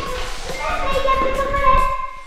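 A high-pitched voice holding one long, drawn-out note without words, with a short rustling hiss at the start.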